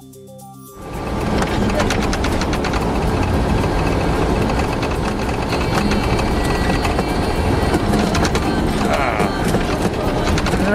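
Loud in-cab noise of a military convoy vehicle driving on a rough gravel and dirt road: a low engine and road rumble with constant rattling of the cab. It starts abruptly about a second in.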